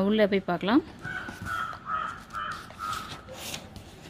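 A bird calling about five times in a row, short calls roughly half a second apart. Near the end there is a brief rustle of paper as a book's page is turned.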